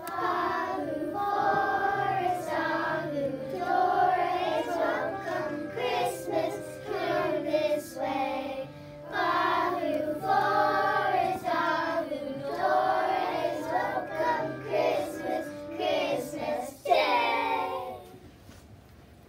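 A group of young children singing together as a choir, with a loud final burst near the end as the song stops.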